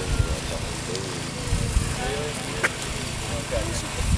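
Indistinct voices of several people talking at a distance, over a low, uneven rumble of wind on the microphone. There is a single sharp click about two and a half seconds in.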